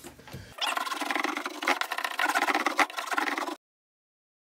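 Hand roller run over sound-deadening mat stuck to the sheet-metal cargo floor, pressing it down: a rough, crackling scrape, which stops abruptly near the end.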